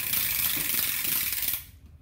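A steady, loud hiss that starts suddenly and cuts off after about a second and a half.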